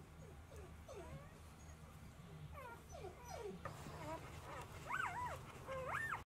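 Newborn golden retriever puppies whimpering: short high calls that glide up and down, coming in quick runs and growing more frequent and louder near the end, over a low steady hum.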